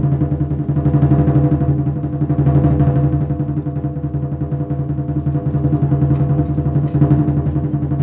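Lion dance percussion music: a fast, continuous drum roll with a steady ringing tone sustained underneath, the loudness swelling and easing throughout.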